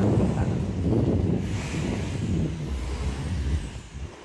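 Wind noise on the microphone and road noise from a moving electric bike, an irregular low rumble with a brief brighter hiss around two seconds in, easing off near the end.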